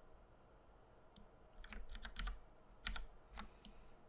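Faint computer keyboard clicks: several short key presses in small clusters, as text is copied and pasted.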